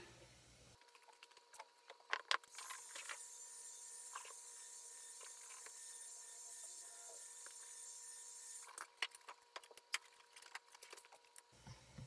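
Heat gun blowing: a faint steady hiss that starts sharply a couple of seconds in and cuts off about six seconds later, warming a vinyl convertible top. Light clicks and taps from handling come before and after it.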